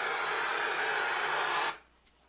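Loud, steady static hiss that cuts off suddenly near the end.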